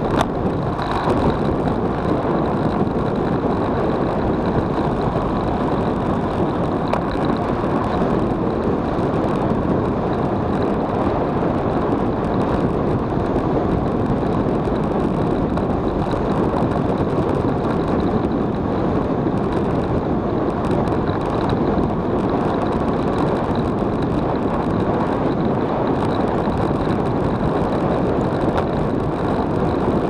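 Steady rush of wind over the microphone of a bicycle-mounted camera on a fast road-bike descent.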